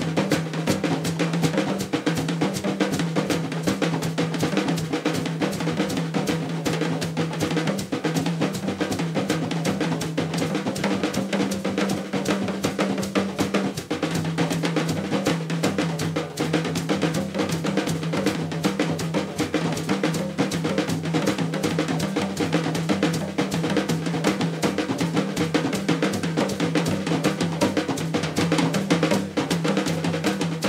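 Drum kit played fast and continuously: dense snare, bass drum and rimshot strokes with cymbals. A low held note runs underneath and shifts in pitch about halfway through.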